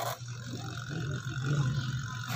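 Sharp 7.5 kg twin-tub washing machine's newly replaced spin-dryer motor starting and running with a steady low hum and a faint whine, growing a little louder as the basket spins up: the motor is working after the repair.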